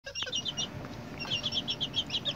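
Young Asil chickens peeping: two quick runs of short, high chirps, about ten a second, the second run starting about a second in.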